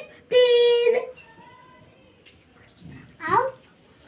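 A young boy's voice: one drawn-out syllable held on a steady pitch for under a second, then a pause, then a short rising syllable near the end.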